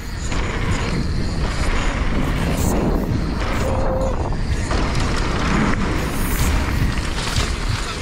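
Mountain bike ridden fast downhill on a loose dirt and gravel trail, heard from a bike-mounted action camera: tyres rolling and crunching over gravel, the bike rattling, and rushing air buffeting the microphone. A short squeal sounds a little before halfway.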